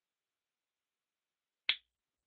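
Silence, then a single short, sharp click near the end.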